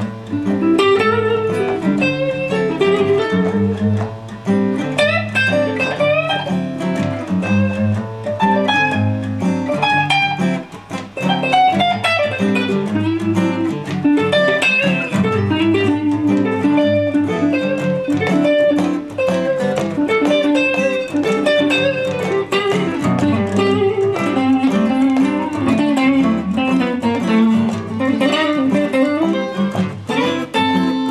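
Two guitars playing together: a steel-string acoustic guitar fretting chords and a Fender Stratocaster-style electric guitar picking single-note lines over it. There is a short drop in volume about a third of the way in.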